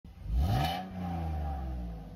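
Car engine revving: the pitch climbs quickly in the first second, then holds steady and fades slightly.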